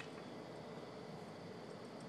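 Faint, steady outdoor background hiss with no distinct event.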